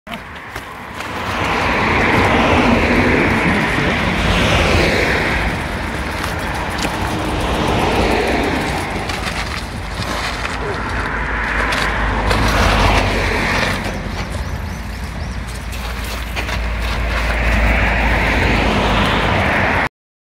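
Labored, heavy breathing in long slow swells from a rider pushing a mountain bike up a steep dirt trail, over a low wind rumble on the camera microphone. The sound cuts off suddenly just before the end.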